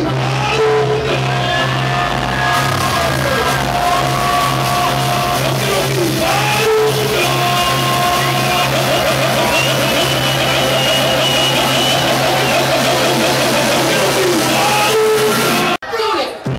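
Loud club dance music from a DJ set played over a nightclub sound system, a steady heavy bass under a gliding melodic line. Near the end it cuts out abruptly for a moment, a glitch in the recording.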